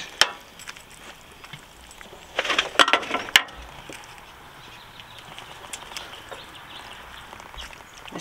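Cooking utensils handled against a pot and serving tray: a sharp clink just after the start, then about a second of scraping and clattering ending in two sharp knocks, over a faint steady background.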